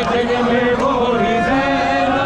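A crowd of Shia mourners chanting a Muharram lament together, many men's voices holding long notes.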